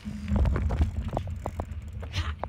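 Low rumble on a phone microphone with a run of sharp clicks and knocks, the handling noise of the phone being swung about in the hand.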